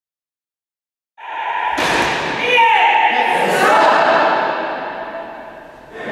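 Raised voices echoing in a large hall, starting suddenly about a second in, with a sharp thump a little under two seconds in.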